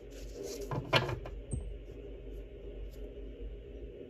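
Tarot cards and deck being handled on a table: a sharp tap about a second in and a few faint ticks, over a steady low hum.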